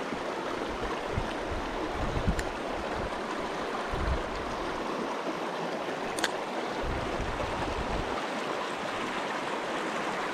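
A shallow, rocky stream rushing steadily through a small riffle. Two brief clicks stand out, about two seconds and six seconds in.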